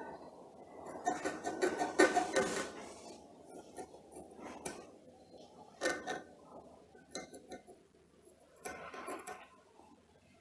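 A pointed metal tool scratching marks into the metal end cap of a washing-machine motor. There are faint scraping strokes in the first few seconds, then a few light clicks of metal on metal.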